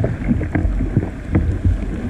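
Sea kayak paddled through rough, breaking water: water rushing and slapping against the hull and paddle, with a few sharp knocks, over a heavy low rumble of wind buffeting the deck-mounted microphone.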